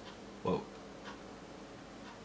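A man's short surprised exclamation, "whoa", about half a second in, sliding up and then down in pitch. After it there is only quiet room tone.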